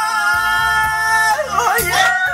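A man singing karaoke into a handheld microphone over backing music, holding one long note for about a second and a half, then breaking into shorter, bending notes.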